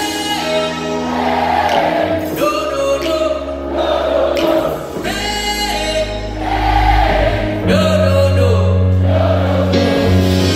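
Live band music played loud through a concert PA, heard from within the audience: sustained bass and keyboard chords that change every couple of seconds, with singing over them.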